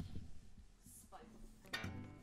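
A quiet pause, then near the end a soft strum on a Takamine acoustic guitar that rings on, as the tune is about to begin.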